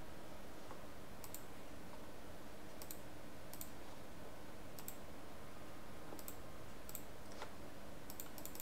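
Computer mouse clicking, about seven separate faint clicks spread over several seconds, over a faint steady room hum.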